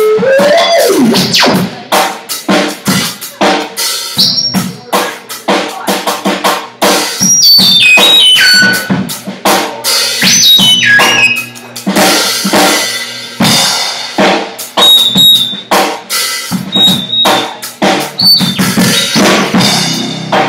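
Live free-improv trio of electric cello, synthesizer and drum kit: busy, irregular drumming throughout, with high stepped descending synth tones cascading about halfway through and a low pitch gliding down in the first second or so.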